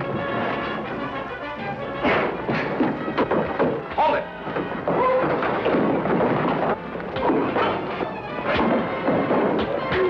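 Busy orchestral soundtrack music over a fistfight, with a string of sharp thuds and crashes from blows and falling bodies and a few short grunts.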